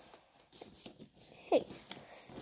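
Faint rustling and crinkling of a paper gift bag and a card being handled inside it, in small scattered crackles.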